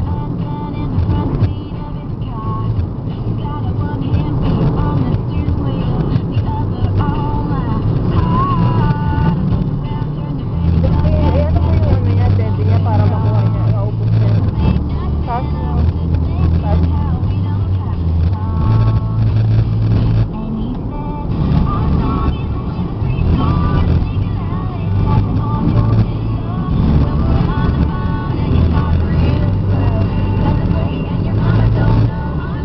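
Moving car heard from inside the cabin: a steady rumble of road and engine noise, with music playing, its low bass notes shifting about every second and a voice over it.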